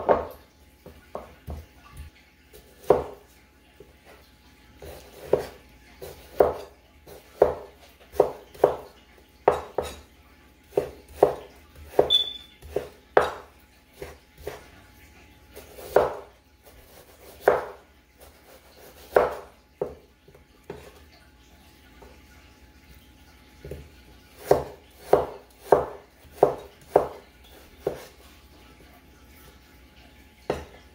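Cleaver chopping raw chicken breast on a thick round wooden chopping board: irregular knocks of the blade through the meat onto the wood, some single and some in quick runs, with short pauses between.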